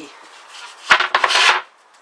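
A plywood board knocks once against a wooden cabinet about a second in, then scrapes along it for about half a second as it is lifted out.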